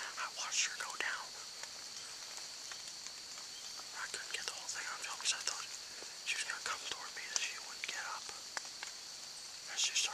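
A man whispering close to the microphone in short breathy phrases, with no voiced speech.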